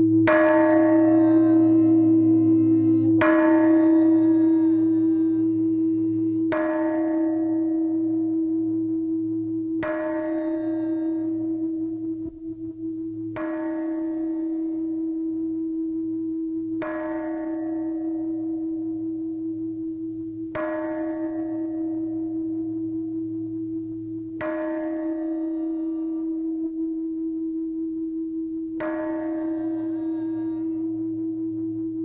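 A large temple bell tolled slowly, struck nine times about every three to four seconds. Each strike rings out in many tones over a steady hum that carries on between the strokes.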